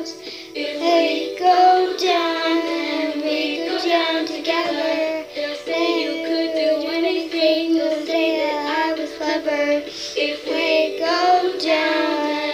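A young girl singing, her pitch moving up and down through continuous phrases.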